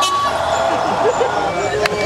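Cars driving slowly past under the voices of people standing by the road, with a brief steady tone at the start.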